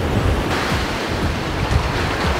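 Wind buffeting the microphone with a heavy, uneven rumble, over the steady rush of sea surf.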